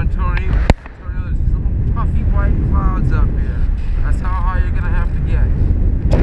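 Wind rushing and buffeting over a GoPro microphone on a paraglider in flight, a heavy, steady low rumble, with faint wavering voices heard through it. A sharp click about a second in is followed by a brief drop in the rumble.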